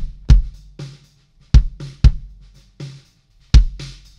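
Recorded drum track playing back: deep kick drum hits in a loose groove with lighter snare hits between them, as a before-and-after comparison of the kick with and without API 550B-style EQ (a cut near 240 Hz and boosts at 50 Hz, 3 kHz and 10 kHz).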